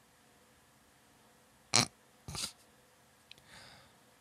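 A man stifling laughter: two short, sharp puffs of breath into a close microphone about half a second apart, then a softer exhale near the end.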